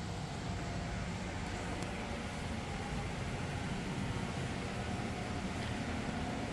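Steady low rumble and hiss of indoor room tone, with no distinct sound events.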